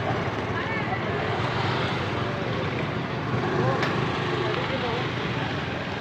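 Indistinct voices of people talking in the background over steady outdoor street noise.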